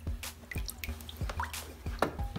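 Water splashing and dripping as a plastic tub of water with goldfish is poured out into a shallow pool pond. Several short splashes and drips come one after another.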